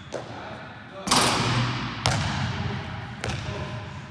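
A basketball shot: the ball strikes the hoop about a second in with a loud hit that rings on in the gym, then bounces on the hardwood court twice more, about a second apart.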